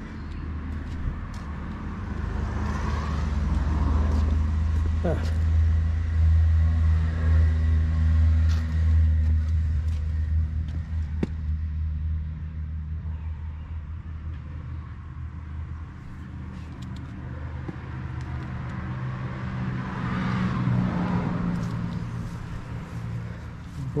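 Passing road vehicles: a low engine rumble swells and fades over the first half, and another vehicle goes by about twenty seconds in.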